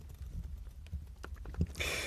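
Scattered light clicks and knocks of a metal gripping tool and a machined aluminium torch tube being strained against each other to twist the stuck end cap off, with a short rasp near the end.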